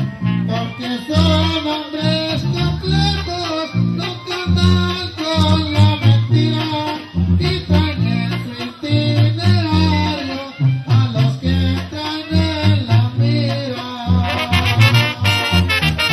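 Live Sinaloan banda music: a sousaphone bass line pulsing under trombones and other brass, with a male singer.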